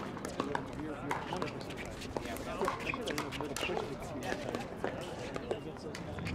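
Pickleball paddles striking the plastic ball: a series of sharp pops at uneven intervals, with people's voices in the background.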